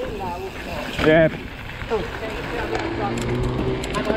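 A rider's loud shout about a second in, with more voice sounds after it, over the steady rush of wind and tyre noise from a mountain bike rolling down a dirt trail.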